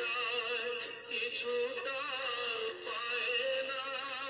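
Background music: a melody in long notes wavering with vibrato over a held, steady accompaniment.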